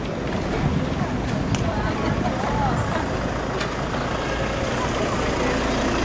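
Several people's voices over a steady low rumble, with a few short knocks.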